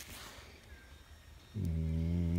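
Quiet for about a second and a half, then a man's voice holds a low, steady hum ('hmm') on one pitch.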